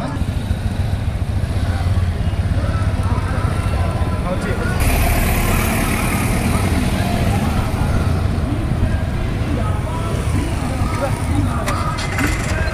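A vehicle engine running with a steady low rumble under people's voices. About five seconds in, a loud hiss joins and stays.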